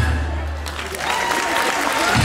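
Audience applause as the dance music ends, its last held bass note dying away within the first second.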